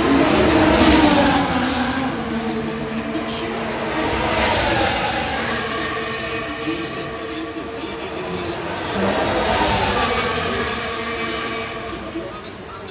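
Formula One cars with 1.6-litre turbocharged V6 hybrid engines going through the final corner one after another. There are three swells of engine sound: near the start, about four seconds in and near ten seconds. Each one's pitch bends up and then falls as the car goes by.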